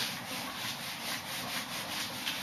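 Whiteboard eraser rubbing across a whiteboard in quick back-and-forth strokes, a steady scrubbing sound.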